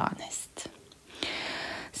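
A spoken word ends, then a short pause and an audible breath in, a steady airy hiss under a second long, just before speaking resumes.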